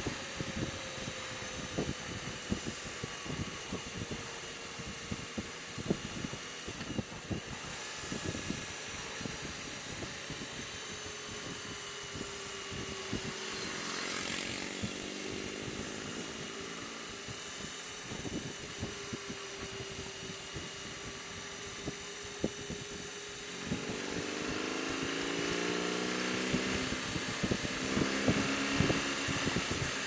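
BMW R18 Transcontinental's big boxer twin engine running under way in third gear, with wind buffeting the microphone in short gusts throughout. About two-thirds of the way in, the engine note grows louder and fuller as the bike pulls harder, accelerating toward 70 mph.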